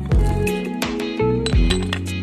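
Background music with a steady beat: sustained tones over regular deep thumps and sharp ticks.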